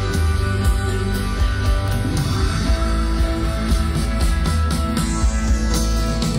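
Live rock band playing an instrumental passage with no vocals: electric guitars, bass and drums.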